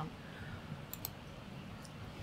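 A few faint, short clicks, about a second in and again near the end, over quiet room tone.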